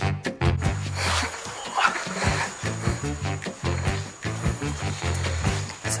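Background music with a steady, repeating bass line, with a rougher noise layered over it from about half a second in.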